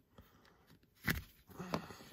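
A single sharp plastic click about a second in, from the flashlight's plastic case being worked open and the plastic pry tool being handled, amid faint handling rustle.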